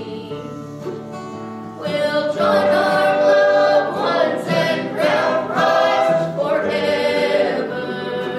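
A woman singing a slow gospel hymn with acoustic guitar accompaniment, the held notes growing louder about two seconds in.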